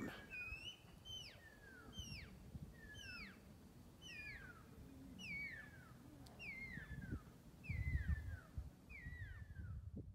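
A bird in the bush repeating a high whistled call that slides down in pitch, about once a second; faint, with a brief low rumble near the end.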